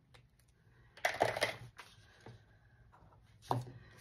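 A cash binder and paper money being handled: a stretch of rustling about a second in, a light click, and a sharper knock near the end.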